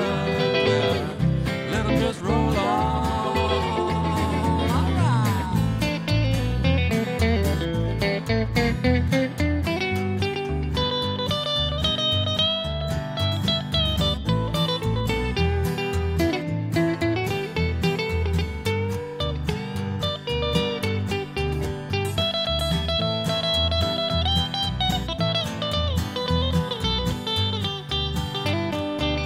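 Live country-folk band in an instrumental break: a Telecaster-style electric guitar plays a picked lead over the band's steady low accompaniment. A sung line trails off in the first few seconds.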